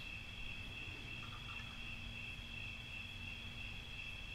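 Crickets chirping in a steady, continuous high trill, with a faint low hum underneath.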